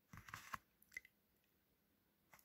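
Near silence broken by a few faint small clicks in the first second.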